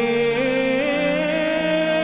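Slow funeral hymn: a voice holding long, slightly wavering notes over steady sustained instrumental accompaniment.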